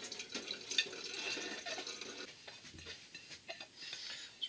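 Hot water being tipped off a dinner plate that it has just warmed, splashing and dripping into a sink, with small clicks.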